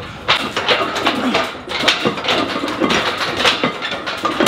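Indistinct voices talking in a small gym room, with a series of sharp knocks and clanks from gym equipment.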